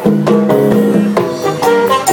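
Live Latin band playing an instrumental passage: congas and timbales drive a steady rhythm under held melody notes.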